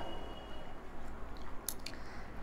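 Faint rustling handling noise from hands working at the washing machine's back panel, with two quick sharp clicks close together near the end.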